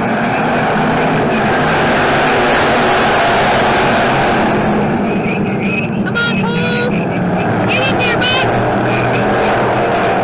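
A pack of dirt-track stock cars racing together on a dirt oval, their many engines running hard at once in one steady, loud din. A voice shouts over the engines between about six and eight and a half seconds in.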